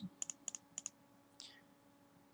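Computer mouse clicking: three quick clicks in the first second, each a sharp double tick, then a fainter tick about a second and a half in.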